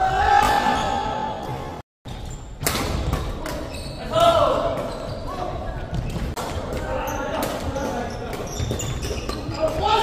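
Badminton rally in a large gym hall: sharp racket-on-shuttlecock hits and other short knocks on the court, echoing in the hall, with players' voices calling out between them.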